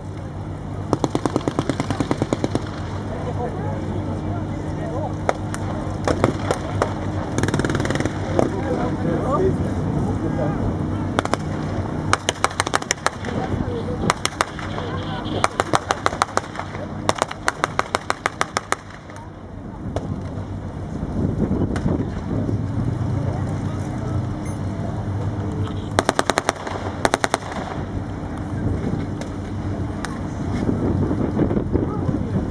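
Machine guns firing blank rounds in repeated rapid bursts, over the steady low running of a tank engine.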